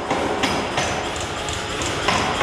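Power forging hammer running steadily in a smithy, repeatedly striking a red-hot steel bar held on its anvil, a loud continuous mechanical clatter.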